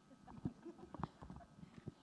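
Faint, irregular knocks and taps, a few short sharp ones about half a second in, at one second and near the end, over a faint murmur of voices.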